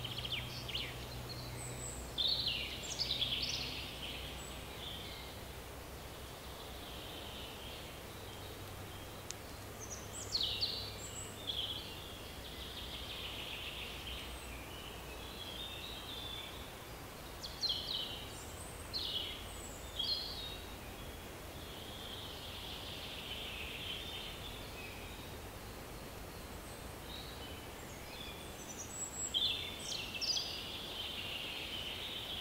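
Forest birds singing: clusters of quick, high chirps and falling notes come every few seconds over a faint steady background hiss.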